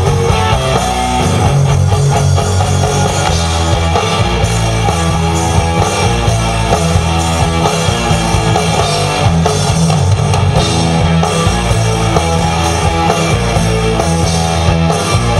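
Rock band playing an instrumental passage: electric guitar over a drum kit, with no vocals.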